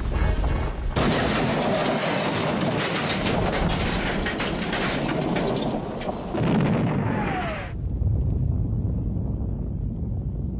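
A rolling boulder crashes into a building with a sudden loud smash about a second in, followed by a long explosion and rumble of debris, with music underneath. A second surge comes around the middle, with a falling tone, before the noise settles into a lower rumble.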